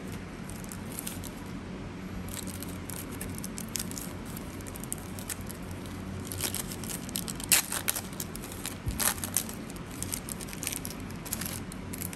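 Paper wrapper of a 1990 Score NFL trading card pack being torn open and crumpled by hand, crackling in irregular bursts that are loudest in the middle.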